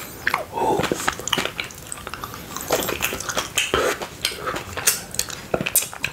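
Close-miked chewing of mochi ice cream: wet, sticky mouth sounds with many small clicks and smacks as the soft rice-dough skin and chocolate cookie-dough ice cream filling are eaten.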